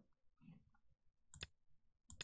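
Near silence: room tone, with one faint click about one and a half seconds in, as from a computer mouse button.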